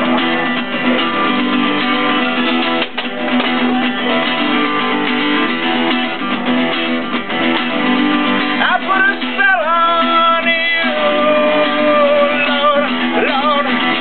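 Acoustic guitar strummed steadily, joined in the second half by a man's voice singing long, held notes.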